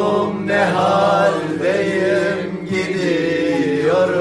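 A man singing a Turkish folk song in long, held, wavering notes, accompanied by a bağlama (saz).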